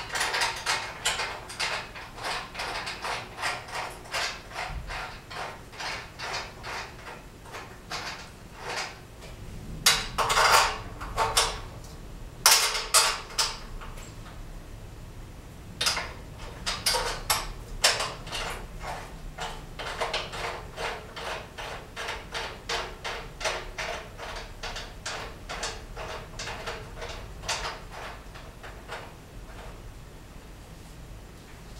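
Metal hardware being fastened by hand on a steel rack frame: runs of quick small clicks, about three a second, with a few louder metallic clatters in the middle.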